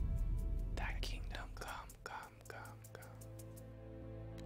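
Whispered voice over sustained trailer music. The low bass fades over the first two seconds and the whispering stops about two seconds in, leaving a steady low music pad.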